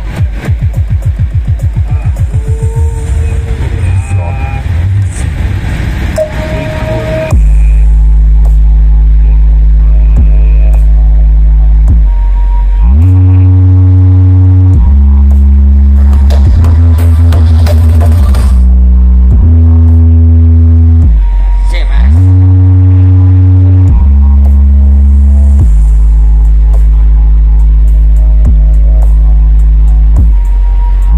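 Huge stacked sound-system speaker rig playing music at full volume. A fast pulsing beat runs for about seven seconds, then it switches abruptly to very loud, sustained deep bass notes that step between pitches every second or two.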